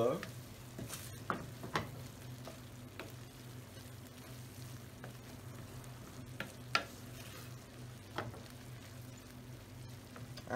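A spatula stirring a pan of kidney beans in thick tomato and onion sauce, with a few sharp scrapes and knocks against the skillet, the loudest near two-thirds of the way in. Under it runs a faint steady sizzle from the stew simmering.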